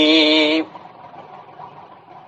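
A man's chanted recitation ending on a long, steady held note that stops about half a second in, followed by faint hiss.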